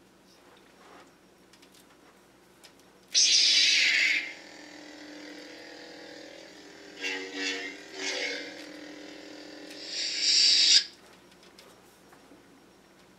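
Electronic lightsaber sound effects: an ignition burst about three seconds in, then a steady electric hum with two short swing sounds in the middle, and a retraction burst before it cuts off near the end.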